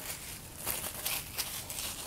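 Saran wrap (plastic cling film) crinkling as it is handled, a few soft irregular rustles.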